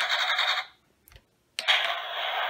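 Electronic battle sound effect from the toy tank's small speaker, played at the press of its button: a burst of harsh noise lasting under a second, a short silence with a faint click, then another noisy effect starting sharply about a second and a half in and carrying on.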